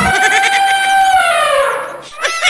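A single long bleating call, high and slightly trembling, that slides down in pitch and fades near the end. It comes in as the background music cuts off, like a comic sound effect, since no animal is in the picture.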